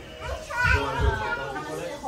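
Young children's voices and playful chatter, with music in the background.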